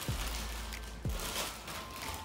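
Clear plastic packaging bag crinkling and rustling as it is pulled out of a cardboard box and handled, over background music with deep bass thuds about a second apart.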